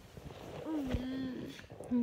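A woman's voice giving a short hummed 'mm', held on one note for under a second.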